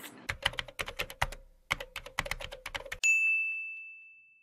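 Intro sound effect of typing: a quick, irregular run of keystroke clicks, then a single bell ding about three seconds in that is the loudest sound and rings out slowly.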